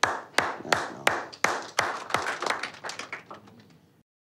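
A small group of people applauding briefly: loud, evenly spaced hand claps about three a second, with fainter scattered claps mixed in, thinning out and dying away after about three seconds.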